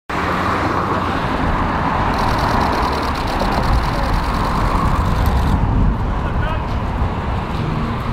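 Steady street traffic noise with a heavy low rumble, and a rapid, even ticking for about three seconds in the middle.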